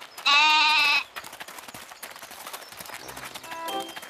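A baby goat bleating once: a single wavering call lasting under a second, just after the start.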